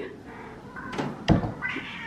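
A house cat meowing faintly, with a short, louder thump about a second and a quarter in.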